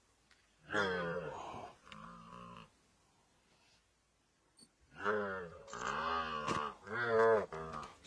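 Hippo calf giving moaning distress calls while spotted hyenas bite into it: a pair of calls about a second in, then another run of calls from about five seconds in, with a quiet gap between.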